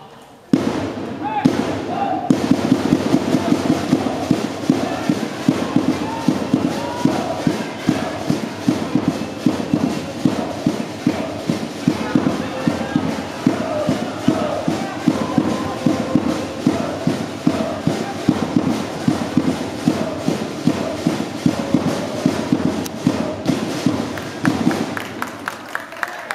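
Football supporters chanting in unison to a fast, steady drumbeat, starting abruptly and dying down near the end.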